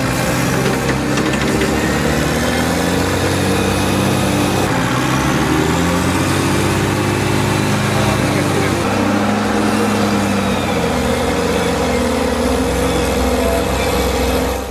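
Heavy diesel engines of a wheel loader and dump trucks working, running continuously with the pitch rising and falling as the machines rev under load.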